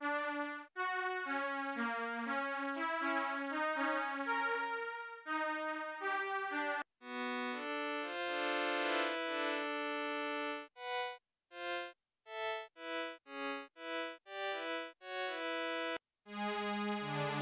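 Ensembletron virtual-analogue string machine (a software synth modelled on 1970s string synths) playing chords. A moving phrase gives way to long held chords, then short detached chords about two a second near the end.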